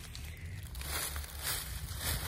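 Footsteps crunching and rustling through dry fallen leaves, several steps in a row, over a low steady rumble.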